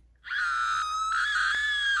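A person screaming: one long, high-pitched scream held steady, starting a moment in.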